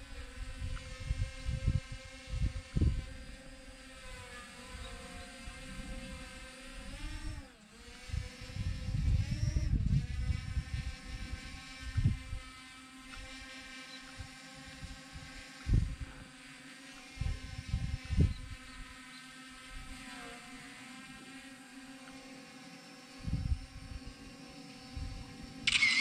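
RG 106 drone's propellers and motors whining steadily in a hover. The pitch dips and climbs back twice near the start as the throttle changes. Wind buffets the microphone in gusts throughout.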